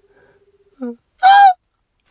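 A woman's voice: a short 'uh' about a second in, then a loud, high-pitched drawn 'oh'.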